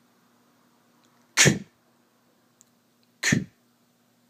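A voice sounding the letter c's /k/ phoneme twice: two short, breathy 'kuh' bursts about two seconds apart.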